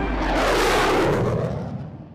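Cinematic logo-reveal whoosh with a low rumble, swelling for about a second, then fading away.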